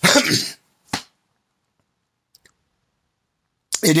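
A man coughing into his hand: one longer cough at the start, then a short second cough about a second in.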